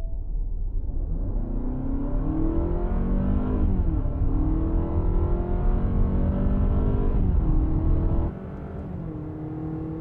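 Honda Accord e:HEV's 2.0-litre four-cylinder hybrid engine under full throttle uphill in Normal mode, heard inside the cabin. The revs climb, dip once about four seconds in like a gear change, climb again, then drop to a quieter steady hum just past eight seconds.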